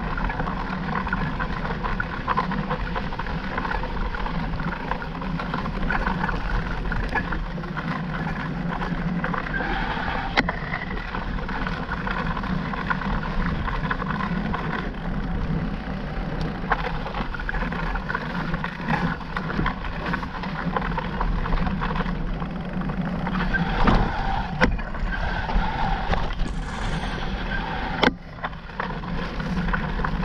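Mountain bike ridden fast on dirt singletrack: a steady rumble and rattle of tyres and bike over the trail, with a few sharp knocks along the way.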